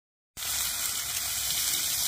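Half-kilo beef steak sizzling steadily in a hot ridged grill pan on a tent stove, starting about a third of a second in.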